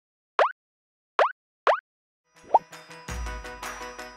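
Three short cartoon 'plop' sound effects, each a quick upward pitch glide, with silence between them. A fourth, smaller blip follows, and music with a bass beat starts about three seconds in.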